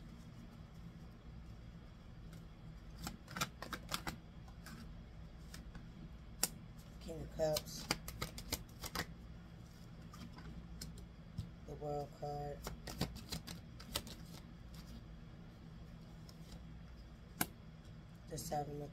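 Tarot cards being handled and laid out on a desk: an irregular scatter of sharp clicks and slaps as cards are flicked from the deck and set down. A short hummed voice sounds twice, about seven and twelve seconds in.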